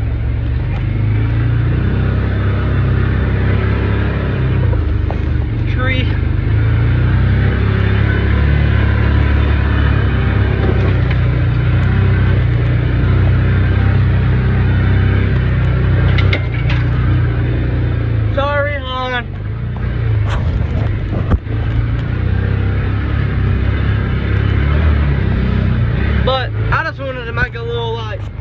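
Side-by-side UTV's engine running steadily under way, its rumble easing off a couple of seconds before the end. A couple of sharp knocks come a little past the middle.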